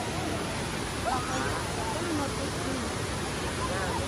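Steady rush of a forest stream cascading over rocks below a waterfall, with faint voices of people in the background.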